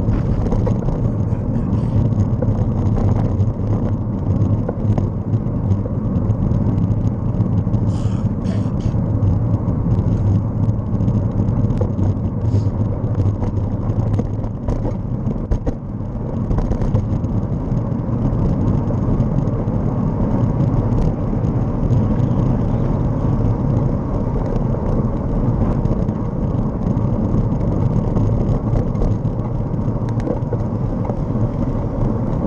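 Steady low rumble of wind on the microphone and road noise while riding along a road, with scattered brief clicks and rattles.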